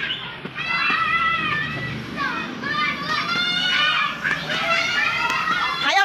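Many children calling out and chattering over one another in high voices.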